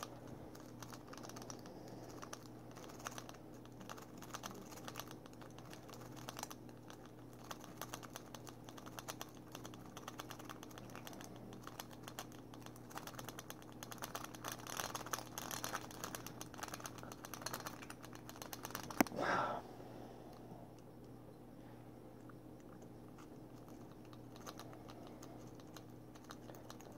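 Lock picking: a pick worked rapidly in a steel padlock's keyway, a dense run of fine light metallic clicks and ticks. The clicking ends with a sharper click and a brief rustle about nineteen seconds in.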